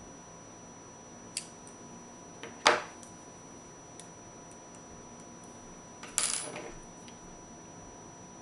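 Small metal parts knocking and clinking as they are handled and set down on a tabletop: a light tick, one sharp knock about three seconds in, and a short clatter with a brief ring about six seconds in.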